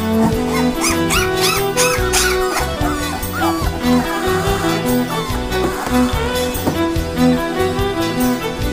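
Background fiddle music, with several short high-pitched whimpers from three-week-old Labrador puppies over it between about one and three and a half seconds in.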